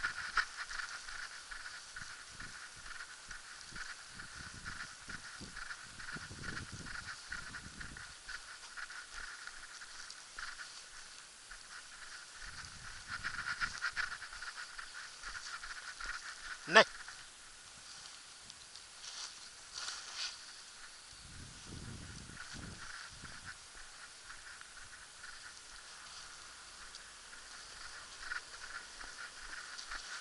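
Walking footsteps and handling noise from a camera carried behind a dog on a long leash, over a steady faint high whine. There are a few low rumbles, and one sharp knock comes about seventeen seconds in.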